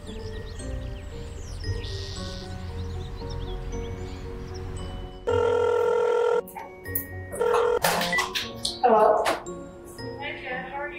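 Soft background music, then about five seconds in a telephone ringing tone sounds loudly for about a second and cuts off. After the ring, a woman's voice is heard on the phone.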